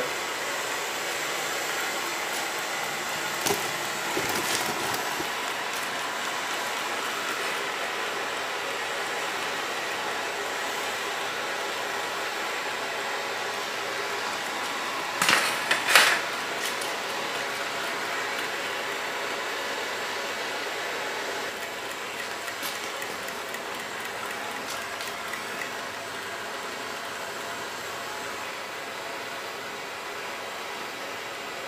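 Blowtorch flame hissing steadily as it heats the hot-end cylinder of a Stirling engine, with a few sharp knocks about halfway through.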